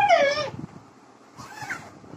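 A child's voice meowing in imitation of a cat: one loud, high call that falls in pitch, then a fainter, shorter one about a second and a half in.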